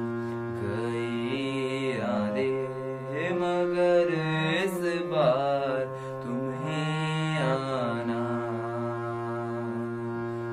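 A harmonium holding sustained reedy notes while a young male voice sings over it. The voice glides up and down in long held phrases on top of the steady harmonium tones.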